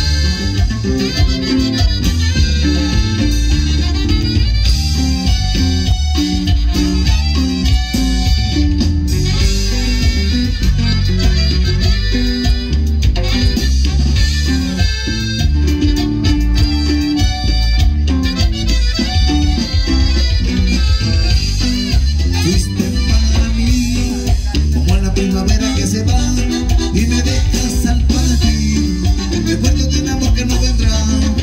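A live band playing cumbia loud through a sound system, with a heavy bass line and a steady dance beat.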